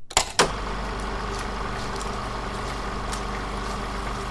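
Film projector running: a steady mechanical whir over a low hum, with a few clicks as it starts and faint ticks throughout.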